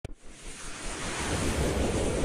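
Whoosh sound effect for an animated logo intro: a rush of noise with a low rumble that builds steadily in loudness, after a brief click at the very start.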